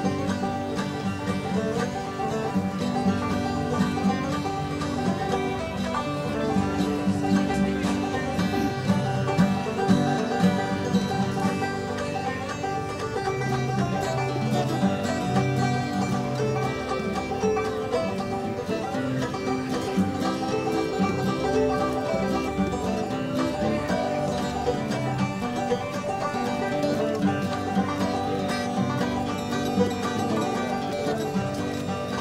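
Five-string banjo playing a tune, a steady stream of plucked notes.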